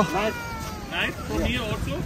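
A drawn-out, high vocal call that falls steadily in pitch over about a second, with people's voices around it.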